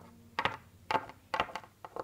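Footsteps on a hard floor: a string of sharp taps, about two a second, as a small figure walks in.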